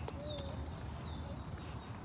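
Stroller wheels rolling over a gravel path, a steady low rumble with a few irregular clicks. A short high chirp comes about a quarter second in.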